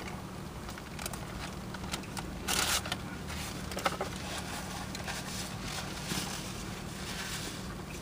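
A person chewing a big bite of a sandwich on crusty Dutch Crunch bread, soft crackly mouth noises over a steady low hum. A short, louder burst of noise comes about two and a half seconds in.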